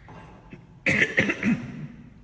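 A man coughing, a short run of three or four coughs starting about a second in.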